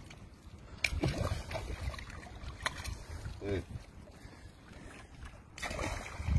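A few short sharp knocks or slaps, one about a second in and another near three seconds, over a low steady rumble, with a brief voice sound about halfway through.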